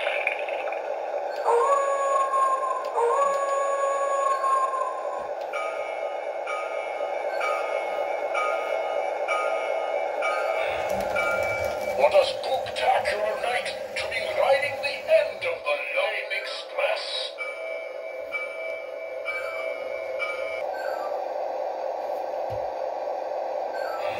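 A Lionel O gauge Halloween diesel locomotive's built-in sound system, heard through its small speaker: a steady diesel engine drone, two horn blasts starting about a second and a half in, and a bell-like chime ringing about twice a second in two stretches. In the middle the rumble and clicking of the wheels on the track come in as the locomotive runs close by.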